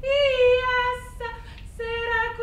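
A woman's voice singing a long held note without words. It swells at the start, breaks off about a second in with a breath, and takes up the same note again near the end.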